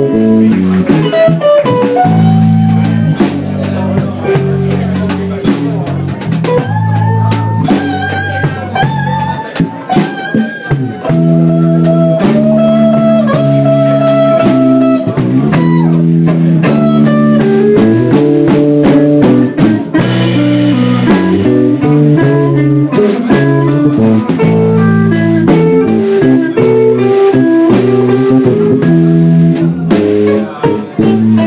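Live blues band playing a slow number: electric guitar through a valve amp carrying bending lead lines over a walking electric bass and drums.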